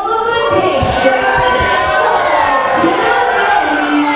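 A ring announcer's amplified voice echoing in a large hall, drawn out over crowd noise, with a few low thumps about a second in.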